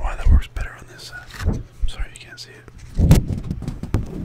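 Close-miked whispering over the handling of a sheet of white paper, with low thumps and a louder rustle of the paper about three seconds in.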